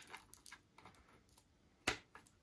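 Charging leads and their plastic plugs handled against a LiPo charger's case: a few faint small clicks, then one sharper click near the end.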